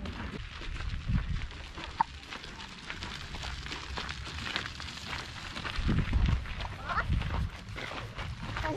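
Wind buffeting the microphone of an outdoor handheld camera in gusts, as low rumbles about a second in and again from about six to seven and a half seconds. Faint brief voice-like tones come through in between.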